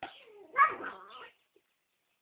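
A dog's drawn-out, wavering vocal sound during rough play, a growling whine lasting just over a second and loudest about half a second in.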